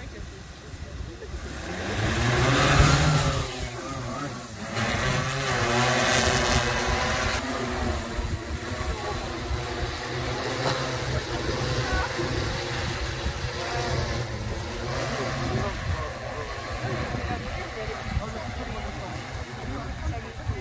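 Large multirotor crop-spraying drone spinning up its rotors and lifting off: the rotor sound rises in pitch and loudness about two seconds in, then holds as a steady hum of several tones while it hovers and flies.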